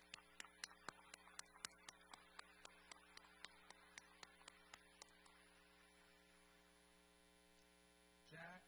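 Sparse hand clapping from one or two people, a steady run of about four claps a second that fades and stops about five seconds in, over a faint steady electrical hum.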